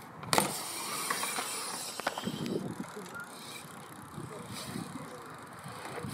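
A BMX bike lands on a concrete skatepark surface with a sharp knock about a third of a second in, then rolls on, its tyres hissing on the concrete.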